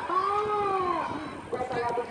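A person's voice in one long drawn-out call lasting about a second, rising and then falling in pitch, followed by more broken voices.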